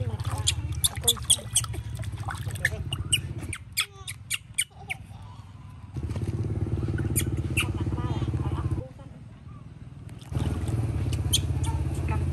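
Baby monkey giving rapid, short high-pitched squeaks while being held wet after its bath, with most of them in the first four seconds and a few later. A steady low motor hum runs under them and cuts out twice for a few seconds.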